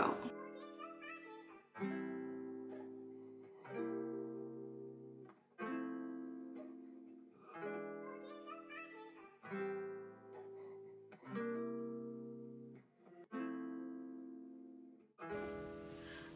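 Soft background music: plucked guitar chords, one about every two seconds, each left to ring out and fade.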